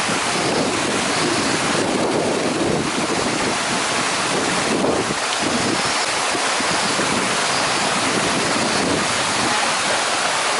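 Steady rushing of a mountain stream's water flowing over rocks, loud and unbroken.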